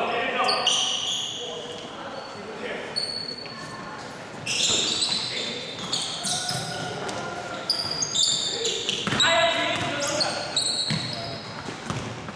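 Basketball being dribbled on a hardwood gym floor, with many short, high sneaker squeaks from players cutting and stopping, echoing in a large hall.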